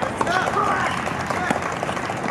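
Outdoor tennis rally: sharp racket-on-ball strikes and footfalls, the loudest strike about a second and a half in, under spectators' shouting voices.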